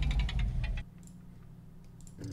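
A sample playing from a software sampler, driven by a recorded MIDI sequence: a rapid ticking rattle that cuts off just under a second in, leaving a low hum.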